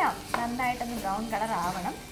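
A woman talking, with a faint sizzle of food frying underneath.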